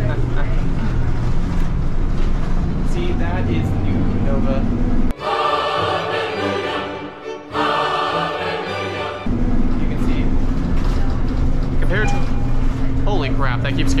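Steady interior drone of a moving Nova LFS hybrid city bus, engine hum and road noise together. About five seconds in, the bus noise cuts out for roughly four seconds and a short snippet of edited-in music takes its place, then the bus drone returns.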